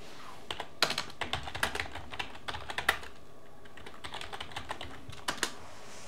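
Computer keyboard being typed on: an irregular run of key clicks as a short text prompt is typed, with two louder presses near the end.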